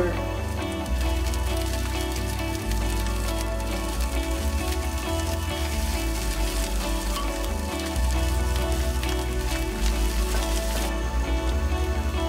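Sliced onions and grated ginger frying in hot oil in a pan, a fine crackling sizzle as they are stirred, which dies down about eleven seconds in. Background music with a steady low bass line plays throughout.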